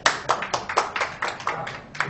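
Spectators clapping: a scattered run of sharp, uneven hand claps that thins out and fades toward the end.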